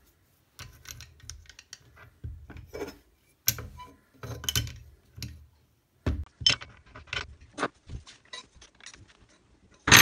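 Irregular metallic clicks, clinks and short rattles of the Arbortech TurboPlane carving disc, its spacers and the spindle flange being fitted by hand onto an angle grinder, with light knocks as the grinder is handled.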